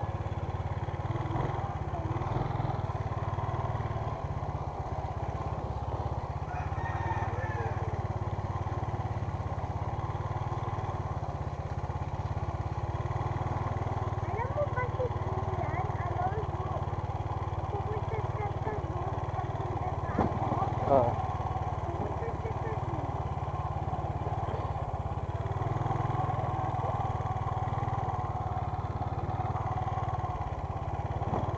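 Small motorcycle engine running steadily while being ridden at low speed over a rough dirt road. A short spoken word cuts in about twenty seconds in.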